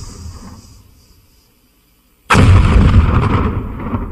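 Explosion sound effects: a deep blast dies away early on, then a second sudden loud boom hits about two seconds in and rumbles and fades over the next two seconds.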